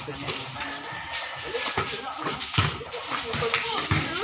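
A basketball bouncing on a concrete court during play: a few sharp thuds about a second apart, over the chatter of players and onlookers.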